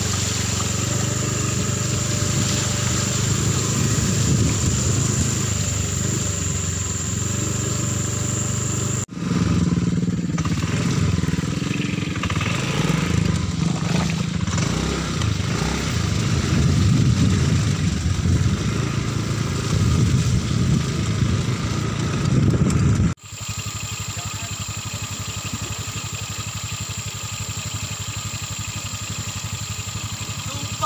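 Motorcycle engine running while riding, in three cut-together stretches: steady at first, louder and varying in pitch from about nine seconds in, then quieter from about twenty-three seconds in.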